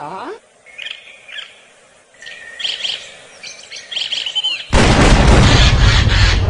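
Small songbirds chirping and trilling in short high phrases. About three-quarters of the way through, a sudden loud, harsh blast of noise cuts in and drowns them out.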